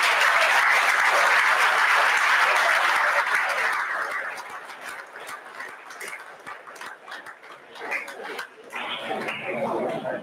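Audience applauding, full for about four seconds, then thinning out to scattered claps.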